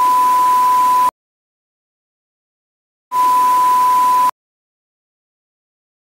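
TV test-card sound effect: a steady, high, pure beep over loud static hiss. It comes twice, each about a second long and about three seconds apart, and each starts and cuts off abruptly.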